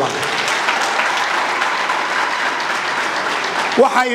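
Audience applauding steadily; a man's voice comes back in just before the end.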